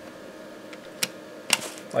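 The push-button power switch on the front of a PC case being pressed and released: two sharp clicks about half a second apart, over a faint steady background.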